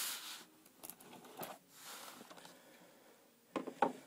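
Soft rubbing and scraping as a trading-card box set is handled and opened, with two sharp knocks near the end.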